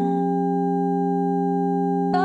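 Electronic music: a held synth chord of several steady pure tones, with no melody or beat moving over it.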